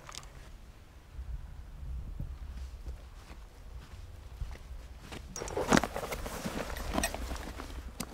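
Footsteps through grass with clothing rustling, growing into louder rustling about five seconds in.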